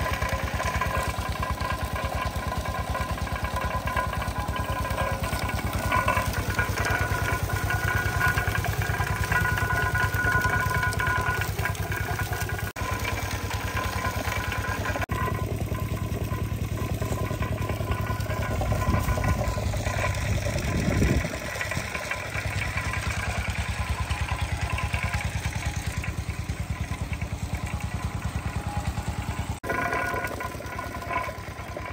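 Engine-driven sugarcane crusher running, its engine keeping a steady, rapid, even beat while cane stalks are crushed between the grooved iron rollers. A brief low surge comes about twenty seconds in.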